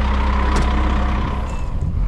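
Scania R380 tipper truck's diesel engine idling steadily, with a single sharp click about half a second in; the engine sound thins out near the end.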